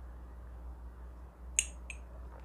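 Quiet room with a steady low electrical hum while a person sips coffee from a glass; about one and a half seconds in come two short, sharp mouth clicks after the sip.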